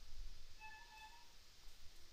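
Quiet background hiss with one faint, short pitched tone lasting about half a second, a little after the start.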